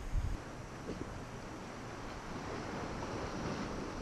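Choppy sea water washing around a kayak, with wind blowing on the microphone, gusting low in the first moment and then steady.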